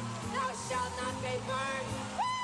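Live gospel music: a woman singing lead into a handheld microphone over held keyboard notes and a steady bass line.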